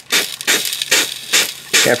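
A trigger spray bottle squirts water in quick bursts, about five in two seconds, onto catalytic converter flange bolts just heated with a MAPP torch. The water hisses into steam on the hot metal: a heat-and-quench to break rusted bolts loose.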